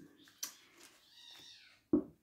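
A cat giving a faint, drawn-out cry whose pitch falls, after a sharp knock about half a second in: pet cats fighting.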